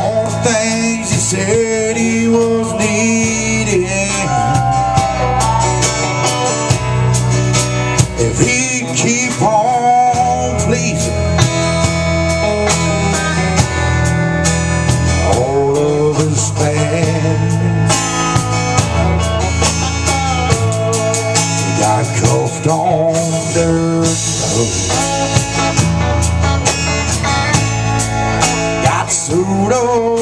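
Live blues band playing, loud and continuous: electric guitars over a drum kit, with no sung words.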